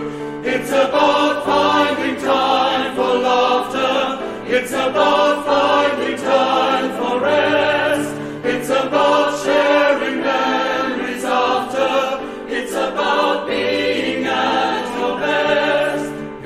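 SAB choir (sopranos, altos and baritones) singing in harmony with piano accompaniment, an upbeat choral song.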